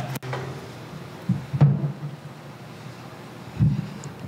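Dull thumps and bumps of a stage microphone being handled and taken from its stand, the loudest about a second and a half in and another just before the end, over low room sound. A shouted "yeah" opens it.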